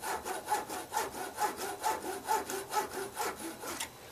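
Fine-toothed Zona razor saw cutting through a cast model cross-beam held against a square, in quick, even back-and-forth strokes, about four a second, stopping near the end.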